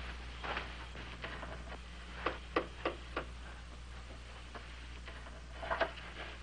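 Footsteps on a hard floor, four sharp steps in quick succession about two seconds in, then a short cluster of light knocks near the end as objects on a cabinet top are handled, over a steady low hum.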